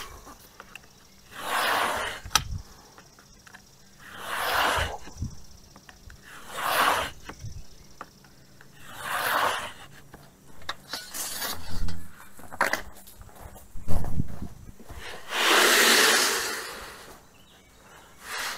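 Carbide-tipped scoring knife drawn along a T-square across HardieBacker fiber-cement board: repeated scraping strokes, about six, every two to three seconds, the last one the longest. Scoring the board so it can be snapped.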